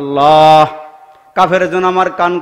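A man's voice chanting a sermon in a sung, melodic style through a microphone. It opens with one loud held note for about half a second, then after a short break goes on in a chanted phrase of long held notes.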